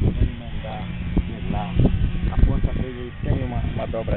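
Indistinct conversation: several men's voices talking, none of it clear enough to follow.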